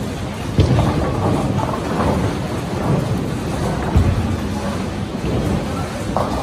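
Bowling alley din: bowling balls rumbling down the wooden lanes and pins crashing. There is a sharp crash about half a second in and another about four seconds in.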